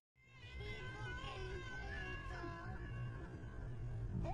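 A solo voice singing or chanting in a slow, wavering style with long held notes, over the steady low rumble of a car on the road. The sound drops out for an instant at the start and fades back in.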